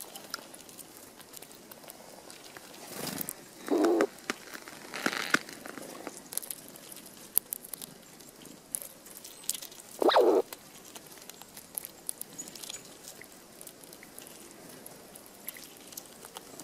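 Eurasian red squirrel cracking and chewing sunflower seeds close to the microphone, a stream of small quick clicks. Twice, about four seconds in and again about ten seconds in, it gives a short, loud, low call.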